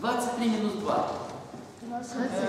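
Speech only: a voice says two short phrases, the second ending about halfway through.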